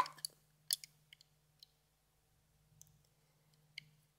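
Near silence broken by a few faint clicks: a plastic Rainbow Loom and its rubber bands being handled, twice early on and once near the end.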